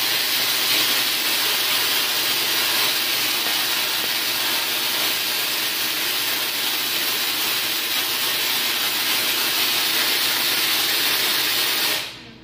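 Tesla coil discharging: a loud, steady hissing buzz of electric sparks that cuts off suddenly at the end.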